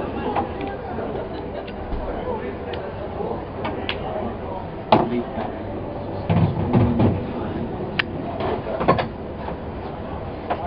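Pool balls clacking together in a few sharp clicks, the loudest about five seconds in, over low background voices.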